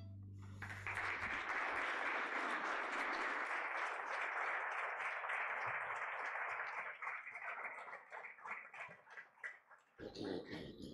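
Congregation applauding, starting about a second in, then thinning to scattered single claps and dying away near the end.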